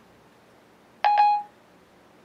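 iPhone 4S Siri chime: one short electronic tone about a second in, lasting about half a second. It marks Siri closing its listening after a spoken question, and no reply follows.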